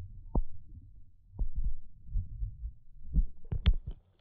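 Lake water heard through a camera microphone held underwater: a muffled, low rumbling with several dull knocks, the loudest two close together near the end.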